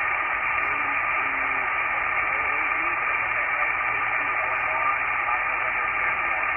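Steady static hiss from an HF amateur radio transceiver's speaker, receiving upper sideband on the 10-metre band with no station coming through, cut off sharply above the voice range. A thin steady tone runs through the hiss.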